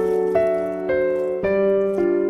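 Background piano music, a gentle melody with a new note about every half second.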